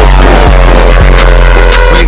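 Hip-hop DJ mix playing loud: an electronic beat with a heavy sustained bass, a kick about twice a second, and sliding high tones over it.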